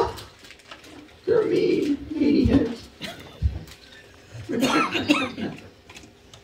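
A man's wordless vocal noises close on a microphone, mimicking a sulking child, in two short bursts, then a burst of laughter near the end.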